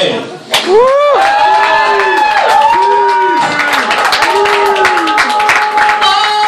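Walk-on music with a sung, gliding melody starts about half a second in, with audience applause and clapping building under it.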